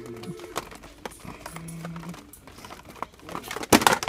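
Plastic blister-packed die-cast toy cars being handled on store pegs, with light clicks and rustles of the packaging, then a loud knock and clatter near the end.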